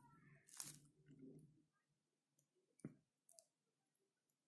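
Near silence with two faint clicks, one about half a second in and a sharper one near three seconds.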